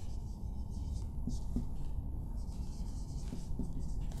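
A marker pen writing words by hand: a run of short, irregular scratching strokes over a steady low background hum.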